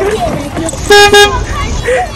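A horn sounding two short beeps in quick succession about a second in, loud and close.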